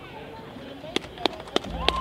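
Electric guitar handled through its amplifier: a few sharp clicks and taps about a second in, then a held note begins to ring near the end.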